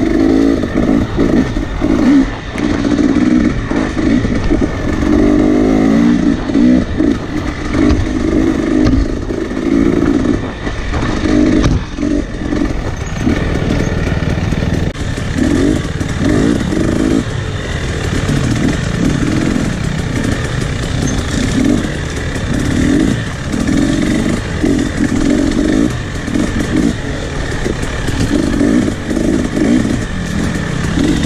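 Dirt bike engine heard from on the bike, running loud and revving up and down every second or two as it is ridden along a narrow forest trail.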